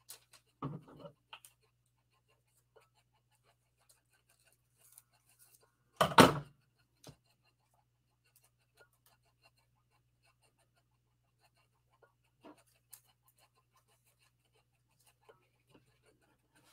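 Quiet handling of paper and card pieces on a craft table: a few light taps and small paper sounds, with one short, louder rush of noise about six seconds in, over a faint steady low hum.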